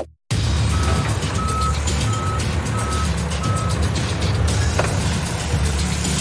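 Truck sound effect: an engine rumbling while a reversing alarm beeps five times, evenly spaced, then stops about two-thirds of the way through.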